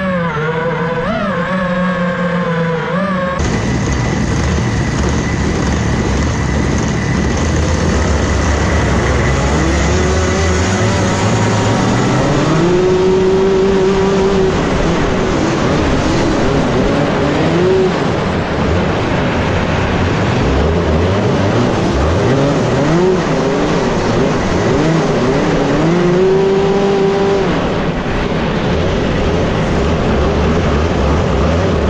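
Rotax Max 125 cc two-stroke kart engine heard onboard, revving up and falling back again and again through the corners, with other karts' engines around it. A different, wavering pitched sound fills the first three seconds before a sudden change.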